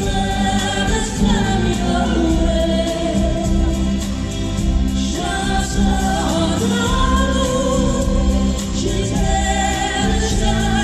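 Live pop band playing a song through a hall sound system: several voices singing together over drums, keyboards and electric guitar.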